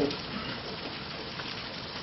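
Steady, even background hiss of the room and recording in a pause between a lecturer's sentences, with the last syllable of his word right at the start.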